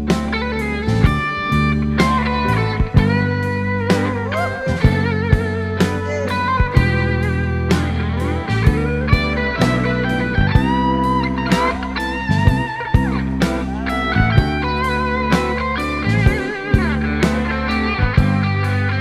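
Instrumental break in a band recording: a lead electric guitar plays a solo with sliding, bent notes over a steady bass line and drum beat, with no singing.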